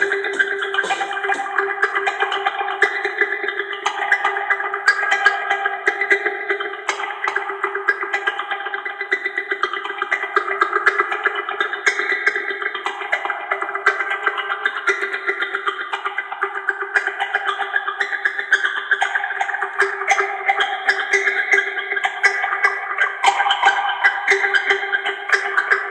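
Background music: sustained chords that change every second or two, played over the footage.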